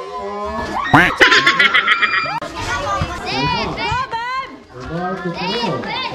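Excited shouting and yelling from players and onlookers at a basketball game, with high, repeated calls. A few sharp knocks come about a second in.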